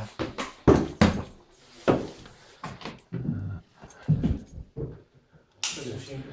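Footsteps climbing a wooden staircase: a series of irregular thumps, roughly one or two a second.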